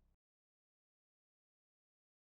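Digital silence: the last faint tail of faded-out music cuts off just after the start.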